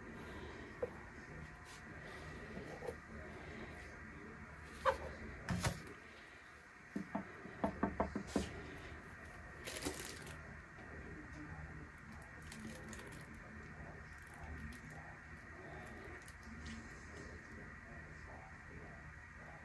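Faint handling noise from a plastic paint jug and painting tools on a worktable: a couple of knocks about five seconds in, a quick run of clicking taps a couple of seconds later, and a brief scrape near ten seconds, over a faint steady hum.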